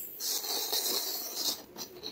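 Thin plastic bag rustling and crinkling as it is shaken open and handled, lasting about a second and a half.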